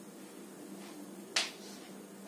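A single sharp tap of chalk striking a chalkboard about one and a half seconds in, over quiet room tone with a faint steady hum.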